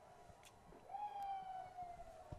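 A faint, distant siren wail starting about a second in and falling slowly in pitch.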